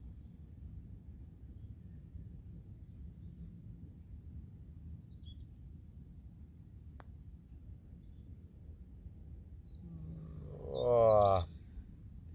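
A putter strikes a golf ball once, a single short sharp click about seven seconds in, over a steady low wind rumble. Near the end a man lets out a drawn-out, falling "oh" as the birdie putt turns away at the last second and misses.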